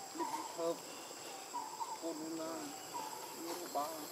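Macaques giving a string of short, soft pitched calls that rise and fall, four or five in a row, over a steady high drone of insects.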